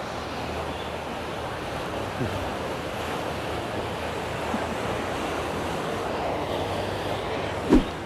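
Steady rushing of wind on the microphone and water along a canal, with a faint low hum beneath it. One sharp knock near the end.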